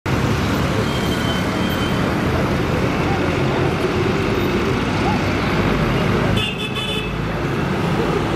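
Heavy city road traffic: a steady mix of car, bus and motorcycle engines and tyres, with horns sounding briefly about a second in and again around six and a half seconds.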